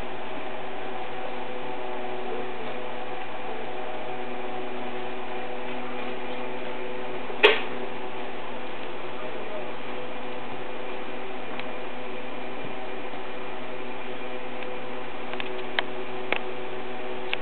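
Steady machine hum holding several fixed tones. A single short, sharp sound cuts in about seven and a half seconds in, and a few faint clicks come near the end.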